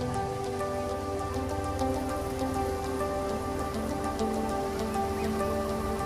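Soft ambient background music of long held synth tones that step slowly from note to note, over a steady rain-like hiss with a light patter of faint ticks.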